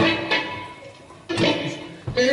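A drum-kit cymbal struck once, ringing out and fading over about a second, followed by a short pitched sound about halfway through that dies away.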